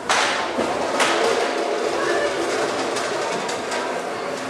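Indistinct voices in a large echoing hall, with a sharp knock at the start and another about a second in.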